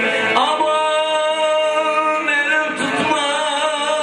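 A man singing an uzun hava, a free-rhythm Turkish folk song, into a microphone, holding long notes with wavering ornaments.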